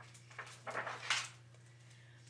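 Faint paper rustle of a picture book's page being turned: a few soft brushing sounds in the first second and a half, then quiet.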